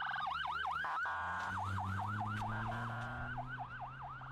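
Civil Defense ambulance siren sounding loudly, switching between a rapid warble and a quick repeating up-and-down yelp, with a low steady engine drone beneath.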